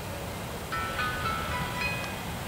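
Freight train of covered hopper cars rolling past with a steady low rumble; about two-thirds of a second in, high squealing tones start, shifting from one pitch to another until near the end, typical of wheel flanges squealing against the rail.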